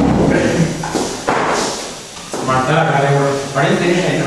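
A single thump about a second in, fading away, as something is knocked or set down on a desk, followed by a man speaking.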